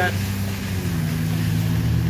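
A steady low engine hum amid traffic on a rain-wet street, stepping slightly lower in pitch about a second in.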